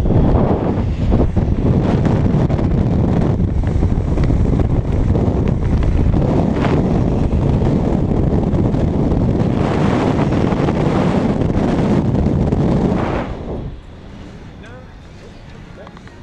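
Loud, steady wind rush buffeting a wrist-mounted GoPro camera's microphone during a fast cable-controlled vertical drop from a tower. It cuts off sharply a little before the end as the descent stops at the landing.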